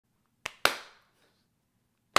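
Two sharp hand claps about a fifth of a second apart, the second louder, each with a short ringing tail.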